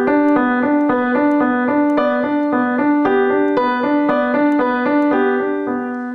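Young Chang grand piano: the left hand plays B and D of a G chord as even, alternating eighth notes, louder than a slower right-hand melody on the G scale above it. The harmony deliberately drowns out the melody, which sounds awkward.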